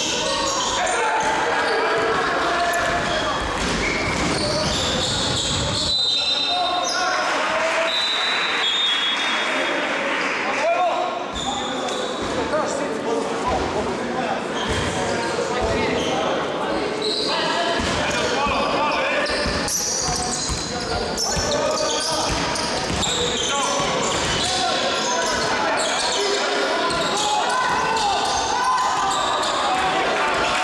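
Live game sound in a basketball gym: a ball bouncing on a hardwood court, with players' and spectators' voices echoing in the hall.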